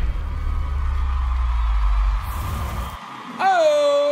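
A deep rumble with a steady higher hum over it, fading out about two seconds in. Then, about three and a half seconds in, a long shouted or sung note starts with an upward swoop and holds one steady pitch.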